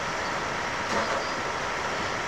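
Steady hiss-like noise with no speech audible, and a brief louder swell about a second in.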